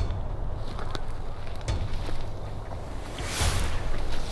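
Wind buffeting the camera microphone: a steady low rumble, with a brief louder hiss of noise about three and a half seconds in.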